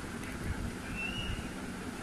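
Steady background noise in a room, with a low rumble and a brief faint high whistle-like tone about a second in.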